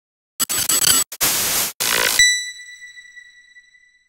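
Intro logo sound effect: three short rushes of hiss, then a single high ringing tone that fades away over about two seconds.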